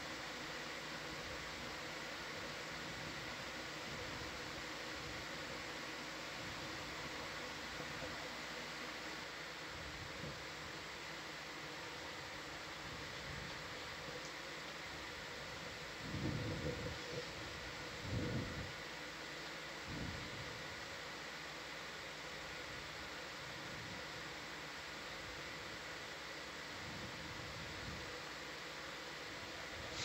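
Steady background hiss with a faint electrical hum from the dive's control-room audio feed. Three soft low thumps come a little past halfway.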